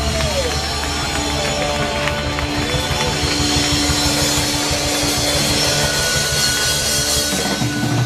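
Rock band playing live: electric guitars, bass guitar and drum kit with constant cymbals, a few guitar notes bending up and down in the first seconds.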